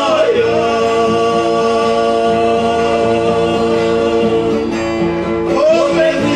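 Música caipira: a male vocal duo singing a long held note in harmony over acoustic guitars, then starting a new phrase near the end.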